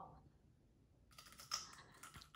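Near silence, then from about halfway faint crisp clicks as teeth bite into a soft, sprouting raw potato.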